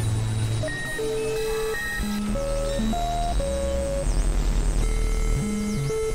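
Experimental electronic synthesizer music: a run of short held tones jumping from pitch to pitch over low bass notes, with quick dipping-and-rising chirps high above.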